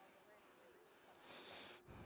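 Near silence: faint outdoor ambience with distant, indistinct voices and a brief soft hiss about one and a half seconds in.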